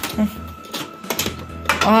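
Metal clicks from a door's steel lever handle and thumb-turn deadbolt lock as the door is tried and does not open at first, a few separate clicks over a steady low hum.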